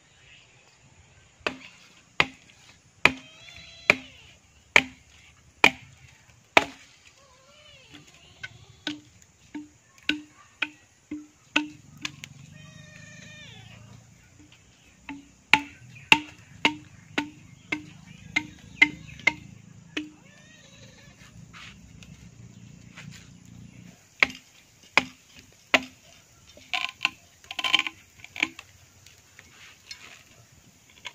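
A machete chopping a length of green bamboo: a run of sharp strikes, each with a short low ringing note, about one to two a second, in three bursts with short pauses between.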